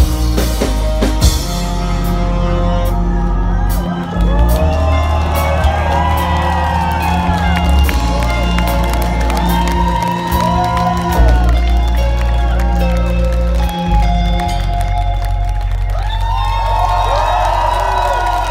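Live rock band playing an instrumental passage on electric guitar, drums and keyboards with a heavy bass line. Crowd whoops and cheers rise over it, thickest near the end.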